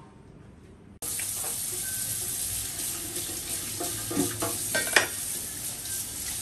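Kitchen tap running into a stainless steel sink while leafy greens are rinsed in a plastic basket, starting suddenly about a second in. A few knocks and clatters from the handling, one sharp one near the end.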